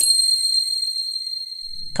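A single high-pitched, bell-like chime rings out and slowly fades.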